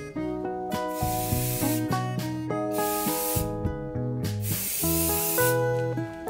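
UHU Sprühkleber aerosol spray adhesive hissing out of the can in three bursts of about a second each, over background music.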